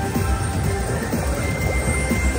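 Gold Fish Feeding Time slot machine playing its electronic bonus music while the reels spin in free spins.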